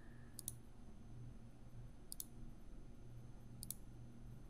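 Faint computer mouse clicks: a quick pair near the start, a single click about two seconds in, and another quick pair near the end.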